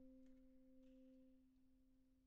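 A saxophone holding one very soft, almost pure low note that slowly fades away.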